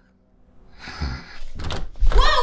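A door being opened: a rising rush of noise followed by a couple of low thuds and clicks.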